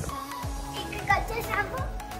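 A young girl's high-pitched, playful calls, over background music.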